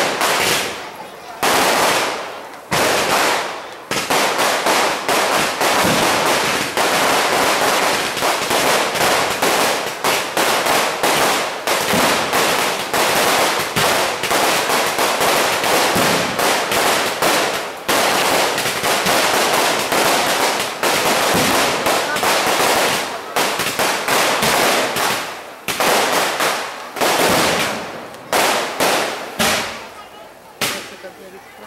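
A string of firecrackers going off in rapid, dense cracks. It comes in a few separate bursts at first, runs almost unbroken for most of the time, and breaks into short bursts again near the end.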